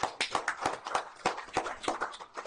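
Applause from a small group of people: many separate hand claps, starting suddenly and running on irregularly.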